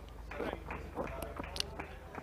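Faint, indistinct voices of players on a cricket field as the batsmen run between the wickets, with a few sharp clicks in the second half.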